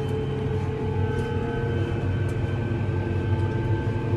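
Fendt tractor's engine running at a steady working speed, heard as a constant drone with a steady hum inside the cab as the tractor drives across the field spraying.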